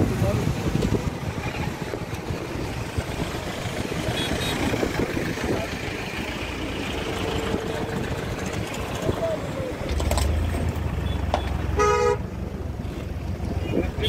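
Traffic on a highway with passing vehicles and indistinct voices. A vehicle engine runs close by in the last few seconds, and a short horn toot sounds near the end.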